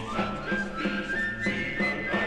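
Orchestral carol music: a high flute melody climbing in held steps over a steady, pulsing accompaniment of about three beats a second.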